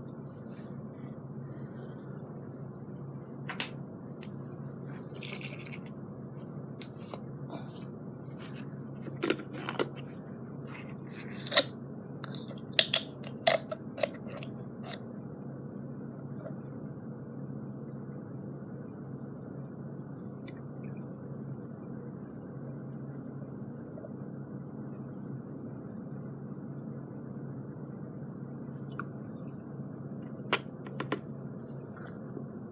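Steady low hum of an AeroGarden hydroponic unit's running air pump, with a cluster of sharp plastic clicks and taps from a few seconds in to about the middle as a liquid plant-food bottle and cap are handled over the unit.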